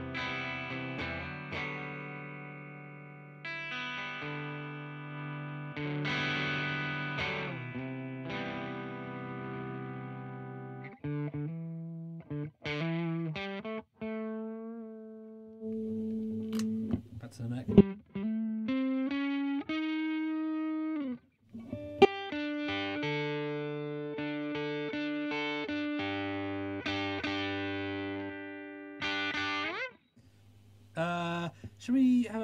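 Electric guitar played through an Arion Metal Master SMM-1 distortion pedal with its distortion rolled back and EQ flat, into a valve combo amp, giving a cleaned-up, lightly gritty tone. Ringing chords give way to single notes and slides about ten seconds in, then chords return for the last third.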